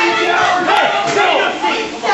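Crowd of wrestling fans shouting and yelling, many voices overlapping.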